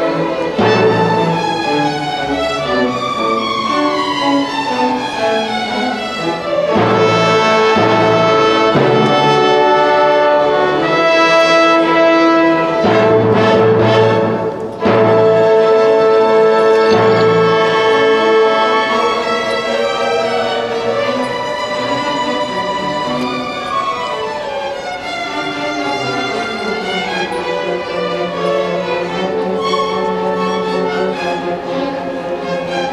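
Symphony orchestra playing live, bowed strings to the fore with brass, in sustained chords and moving lines, with a momentary break about halfway through.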